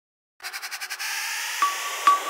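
Intro sound effects: after a moment of silence, a rapid flutter of about eight noise pulses a second gives way to a steady hiss, with a short bright ding about one and a half seconds in.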